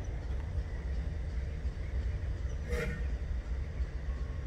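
Low, steady rumble of a freight train standing in a rail yard, with one brief faint sound a little under three seconds in.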